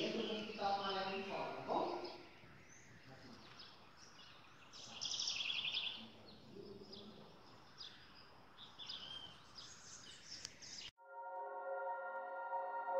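Small birds chirping and trilling now and then over faint outdoor background noise, with a brief voice at the start. Near the end this cuts to soft, sustained ambient music.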